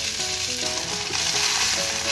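Chopped garlic sizzling in hot oil in a wok as cooked white rice is added for garlic fried rice: a steady hiss.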